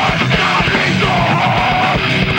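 Heavy metal band playing live: distorted electric guitar over fast kick-drum strokes, with a held, screamed vocal line.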